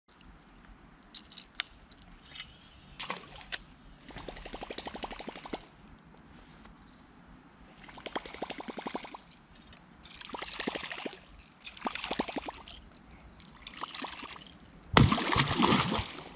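A Whopper Plopper topwater lure is retrieved across the water in about four short pulls, and each pull brings a rapid run of plopping ticks from its spinning tail. Near the end a big wels catfish strikes the lure with a sudden loud splash.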